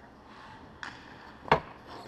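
Hard knocks of hockey gear at an ice rink: a lighter crack a little under a second in, then a loud sharp knock about a second and a half in, over faint scraping of skates on the ice.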